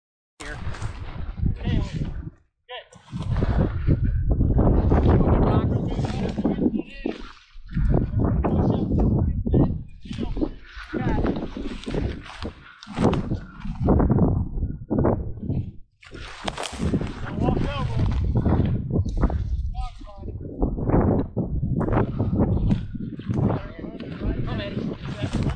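Footsteps and legs pushing through dry sagebrush: an irregular run of crunching and rustling noises.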